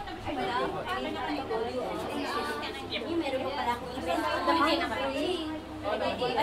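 Indistinct chatter of several people talking at once, no single clear voice.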